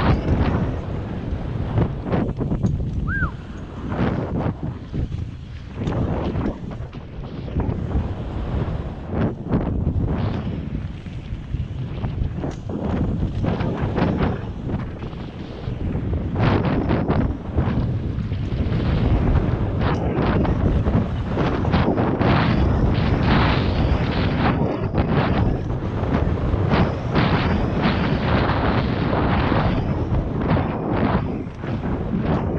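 Wind rushing over the microphone of a camera on a mountain bike riding fast downhill on a dirt trail, with tyres on dirt and the knocks and rattles of the bike over rough ground. It gets louder and busier about two-thirds of the way through.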